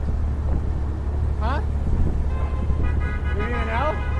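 Wind rumbling on the microphone over street traffic noise. A pitched sound rises quickly about one and a half seconds in, and steady held tones come in over the last second and a half.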